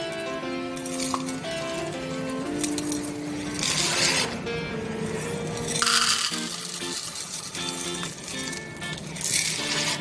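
Background music with a simple held-note melody, over which dry macaroni pasta rattles and clinks as it is poured from a plastic canister into a measuring cup, in three brief bursts.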